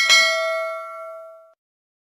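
Notification-bell sound effect of a YouTube subscribe animation: a single bright ding as the cursor clicks the bell icon, ringing and fading away over about a second and a half.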